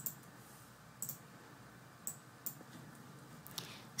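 Computer mouse clicking about six times, faint and irregularly spaced, over low room hiss.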